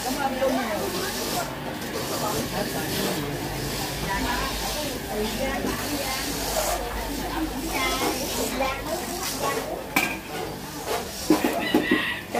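A steady hiss from bánh xèo batter sizzling in many pans over gas burners, under background chatter. A couple of sharp metal clinks near the end.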